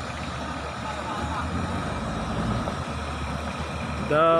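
A 4x4 jeep's engine running steadily at low revs, a low even hum, with faint voices over it.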